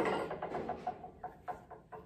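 Tinsmith's hand-operated grooving machine being worked by hand, its carriage moving freely along the arm: a brief sliding rush, then a run of light clicks that slow and fade.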